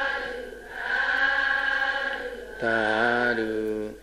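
Buddhist chanting by a man's voice in long held notes. Three drawn-out phrases are separated by short breaths, and the last is lower and slides down at its end.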